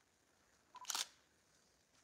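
A single brief, sharp click about a second in, over quiet room tone.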